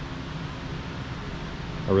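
Steady low background hum and hiss with no distinct events, and a man's voice starting right at the end.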